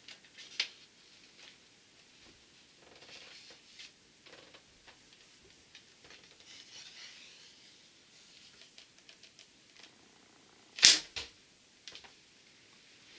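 Faint clicks and rustles of a bow and arrow being handled and an arrow nocked, then near the end a loud, sharp snap of a bowstring being released, followed a moment later by a second, smaller knock.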